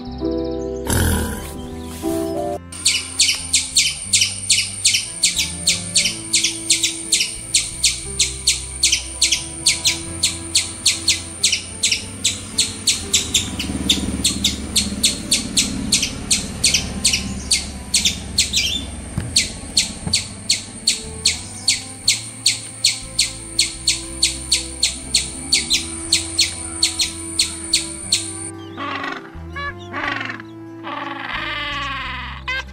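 A long, fast run of short high-pitched chirps, several a second, over soft background music.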